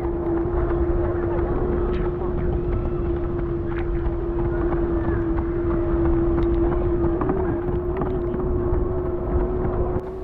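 Wind rumbling on a moving microphone, with a steady unchanging hum and a few faint ticks underneath.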